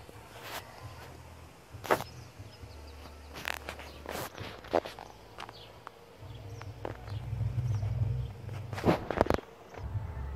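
Irregular soft knocks from footsteps and from handling a hand-held phone, over a low wind rumble on the microphone that grows stronger in the second half.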